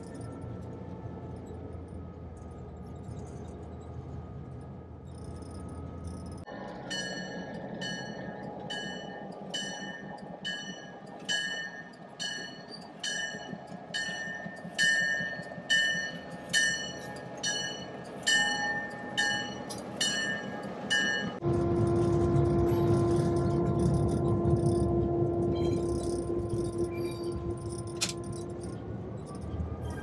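Great Northern F7 diesel locomotive: its engine runs steadily, then its bell rings about one and a half strikes a second for some fifteen seconds. Near the end comes a louder stretch of engine rumble with a strong steady held tone.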